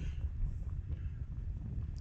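Wind buffeting a phone microphone outdoors, a low, uneven rumble with faint open-air background.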